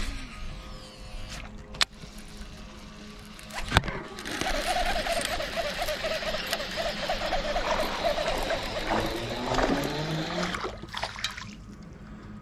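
Baitcasting reel being cranked steadily for several seconds while a small Guadalupe bass is played to the boat on a bent rod, after a sharp click about four seconds in.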